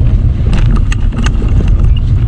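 Loud wind rumble buffeting the microphone of a bicycle riding along a dirt road. A few sharp clicks come from the bike about halfway through.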